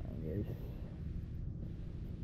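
A brief voice sound shortly after the start, over a steady low rumble.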